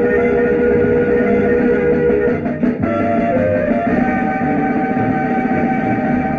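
Instrumental film background music: a melody of long held notes that shifts pitch a few times, with a higher phrase coming in about four seconds in, over a steady lower accompaniment.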